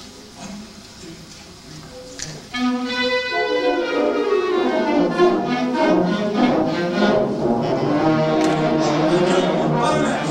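A school concert band, with clarinets and brass, starts playing about two and a half seconds in and carries on with a full, sustained passage.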